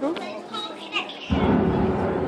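Excited squeals and voices from a crowd that includes children. About a second and a half in, a sudden loud low rumble breaks in and carries on: the thunder effect that opens the Tower of Terror pre-show.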